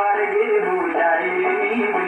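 A vocal song playing from a vinyl record on a turntable: a singing voice, held and wavering in pitch, over instrumental accompaniment.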